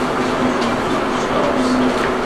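Steady background noise of a lecture hall, a continuous even hiss and hum with no distinct event.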